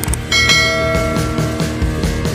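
A bell chime sound effect from an animated subscribe-and-notification-bell graphic rings once about a third of a second in and fades over a second or so, over background rock music with guitar.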